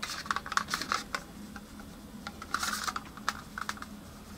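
Fingernails and fingers clicking and tapping on a hard plastic candy-kit tray as it is handled: a quick run of clicks at the start, a short scratchy rustle near the middle and a few more clicks toward the end.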